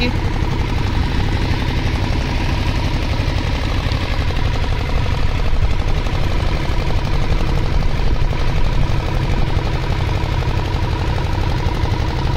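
An engine running steadily: a continuous low rumble with a constant hum.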